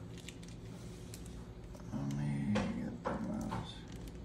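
Faint crinkling of a plastic bag, then about halfway through a short, low, murmured voice sound followed by a few breathy sounds.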